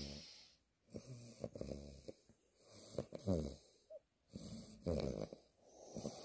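Chow chow puppy snoring softly in its sleep: three snoring breaths, about two seconds apart.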